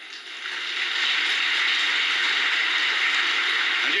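Large audience applauding, building up over the first second and then holding steady.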